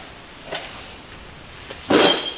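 A loose engine cylinder head being handled and lifted: a small click about half a second in, then one loud metal knock near the end with a short metallic ring after it.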